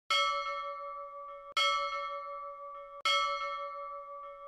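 A bell struck three times, about a second and a half apart, each stroke ringing on and fading before the next.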